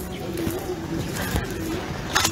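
A low, steady cooing call, like a dove's, over outdoor background noise, with faint voices.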